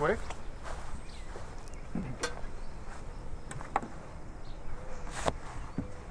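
Faint steady outdoor background of insects, broken by a few light knocks and clicks.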